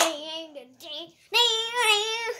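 A young boy singing, with a single sharp hand clap right at the start, a short falling phrase, then a long held note in the second half.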